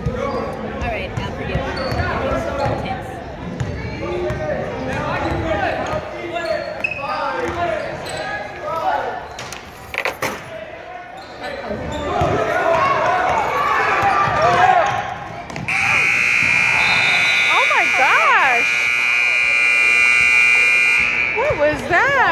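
Basketball dribbled on a hardwood gym floor amid crowd voices, then the gym's scoreboard buzzer sounds one long steady tone for about six seconds near the end.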